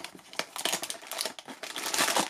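Blind-box packaging being handled and opened: a cardboard box and the foil bag inside it crinkle and rustle in a quick, irregular run of crackles.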